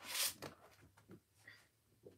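A sweatshirt's cloth rustling as it is handled, with a short swish right at the start, then faint light handling clicks.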